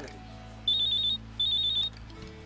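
Mobile phone ringing with a beeping ringtone: two short bursts of rapid high-pitched beeps, about five beeps in each, in the second half.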